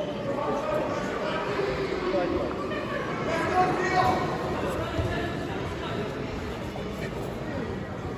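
Indistinct chatter of many overlapping voices in a large sports hall, with no single voice clear.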